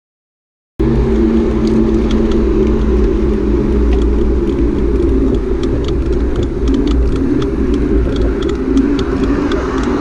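Silence, then under a second in a steady, loud rumble of wind and tyre noise on a camera riding along a road on a bicycle, with faint irregular ticks over it.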